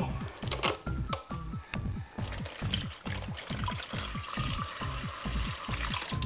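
Dark red liquid poured from a bottle into a large bowl, a steady splashing pour starting about two seconds in, over background electronic pop music with a steady beat.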